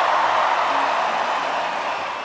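Large crowd cheering after a live set, a steady wash of voices with no music over it.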